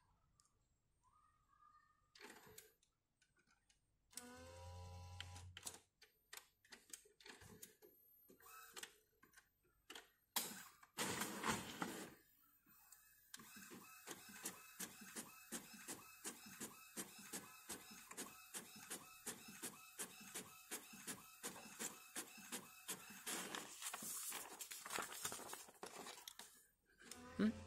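Epson WorkForce Pro WF-C5210 inkjet printer printing a page, faintly heard. First come clicks and a short motor whirr as it takes in the paper. Then, for about ten seconds, the print head shuttles back and forth in an even run of ticks, about three a second, over a steady hum.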